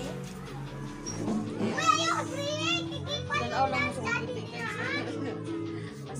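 Background music playing steadily under high-pitched children's voices squealing and calling out, loudest about two seconds in and again briefly near the end.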